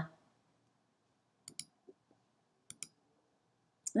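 Two quick double clicks of a computer mouse, about a second apart, against near silence.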